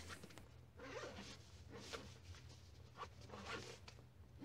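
Zipper on a fabric backpack being pulled shut in several short, faint pulls.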